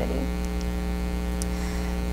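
Steady electrical mains hum with a buzzy stack of overtones, running unchanged with no speech over it.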